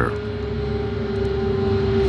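Steady, aircraft-like rumbling drone with one held mid-pitched tone, slowly growing louder.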